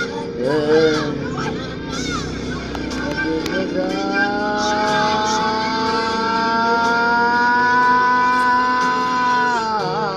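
A person's voice singing: a few short wavering notes, then one long held note that slowly rises in pitch and falls off just before the end.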